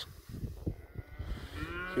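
A yearling steer mooing once, the call starting near the end.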